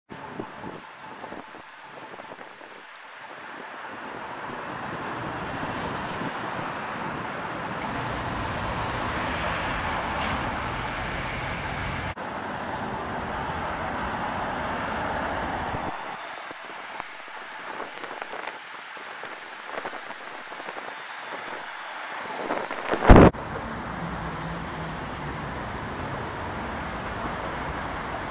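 Road traffic on a multi-lane city street: the rush of passing cars swells over the first half and fades, then a single sharp thump about 23 seconds in before the steady traffic noise resumes.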